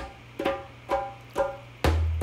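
Meditative background music: three plucked notes about half a second apart, each fading out, then a deep drum beat with a long low boom near the end.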